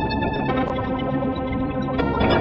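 Electronic music from the Fragment additive spectral software synthesizer, sequenced in Renoise with delay and reverb added: dense layers of sustained synthesized tones, with higher layers coming in about half a second in.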